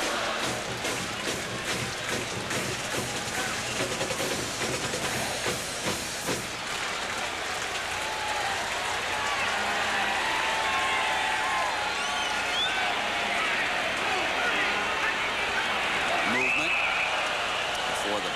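Football stadium crowd noise with a band's drums and music. The drumbeats stand out over roughly the first six seconds, then the crowd din goes on more evenly.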